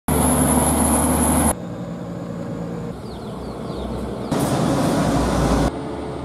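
Heavy diesel trucks running as they pass along a road, heard in short segments that switch abruptly about every second and a half.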